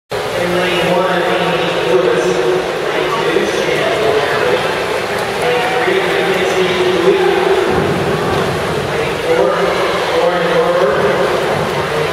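Crowd of teammates and spectators shouting and cheering on racing swimmers, many voices overlapping in a steady din.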